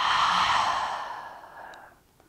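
A woman's long, audible exhale through the mouth, a sigh-like breath that starts strong and fades out over nearly two seconds.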